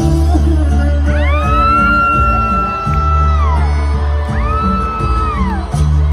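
Live regional Mexican band music with strong sustained bass notes, overlaid by two long high-pitched whoops that rise, hold and fall off, one about a second in and another past the middle.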